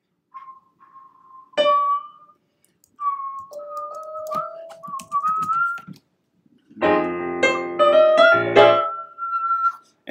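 Electronic keyboard-style tones play a passage of a jazz vocal arrangement. A thin held melody note with one struck chord comes first, then a two-voice line that steps upward, then a run of full, dense chords, ending on a single held high note.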